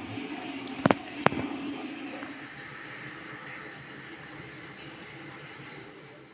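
Two sharp clicks about a second in, under half a second apart, over a low steady hiss in a small room.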